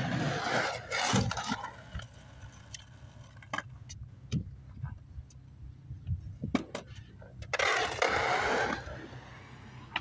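Skateboard wheels rolling over concrete, loudest in the first second or so and again for about a second near the end, with scattered clicks and knocks between. A sharp clack at the very end as the board's tail is popped to ollie onto a ledge box.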